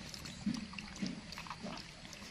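A young pet monkey making soft, short low sounds close to the microphone, three of them about half a second apart, with faint clicks in between.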